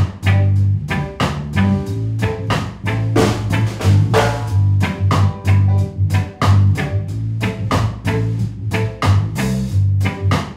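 Soul music played by a band: a drum kit keeping a steady beat over a prominent bass line, with guitar.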